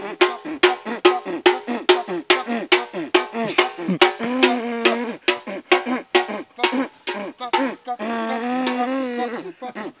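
Improvised banda-style music made with mouths and a bucket: men imitating brass instruments with their voices through cupped hands and a hat, over a steady beat of about three knocks a second struck on a metal bucket. The brass imitation holds long notes twice, about four seconds in and near the end.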